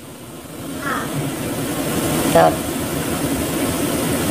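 Steady drone of shipboard machinery and ventilation. It swells over the first second and then holds steady.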